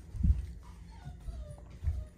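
Faint puppy whine that slides down in pitch, between two low thumps from the phone being handled.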